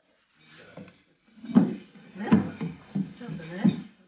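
Indistinct voices talking, not made out as words, with a few sharp knocks among them.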